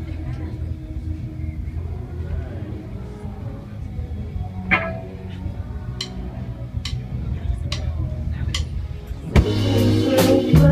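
Live band starting a song: low held notes with scattered light taps, then the full band comes in loudly about nine seconds in.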